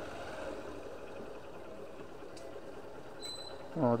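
Small motorcycle engine running steadily at low speed as it rolls slowly along a dirt track.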